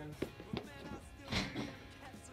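A few footsteps of hard-soled shoes on concrete steps: two short sharp taps early on, then a brief scuff about one and a half seconds in.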